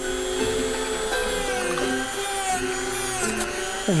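Handheld rotary tool with a small cutoff wheel running at high speed, a steady whine, as it cuts and notches a wooden popsicle stick. Music plays underneath.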